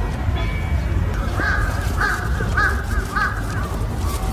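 A crow cawing, several short caws in quick succession starting about a second in, over a steady low outdoor rumble.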